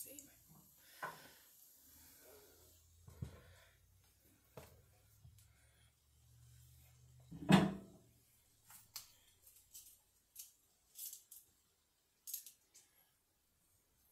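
Microwave oven running with a low hum. About halfway through comes a loud clack, followed by a scatter of light clicks and knocks.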